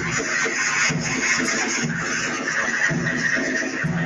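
Marching band playing on the street, with a steady bass-drum beat about once a second under the band.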